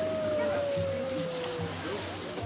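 An Asian elephant's high, clear call: a quick upward swoop into one long held note that slowly sinks in pitch, lasting nearly two seconds.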